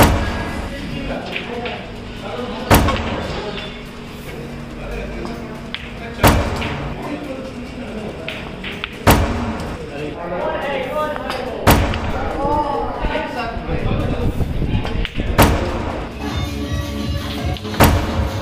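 Snooker balls being struck: sharp single clacks of cue on ball and ball on ball, one every two to four seconds, about seven in all, over background music.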